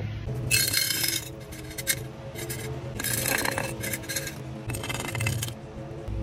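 Small pebbles shovelled with a hand trowel into a glass jar, rattling and clinking against the glass in about four short bursts.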